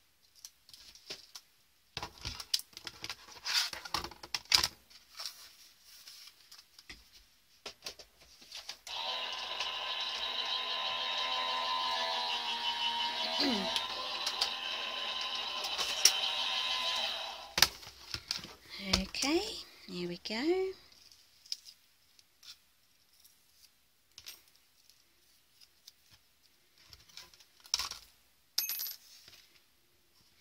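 An electric die-cutting machine, a Crafter's Companion Gemini, running steadily for about eight seconds as it feeds a die and card through, with a slight shift in its pitch partway. Scattered clicks of handling come before it, and near the end small metal dies are dropped out of the cut card onto the cutting mat, clinking.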